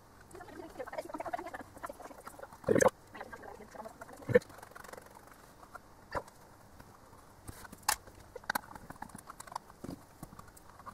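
Hands handling and positioning wires while soldering inside a plastic enclosure: a rustle of wire, then a loud short knock about three seconds in and a few light clicks and taps spread through the rest.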